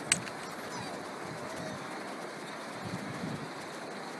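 Steady rush of flowing river water past a drift boat, with one short click just after the start.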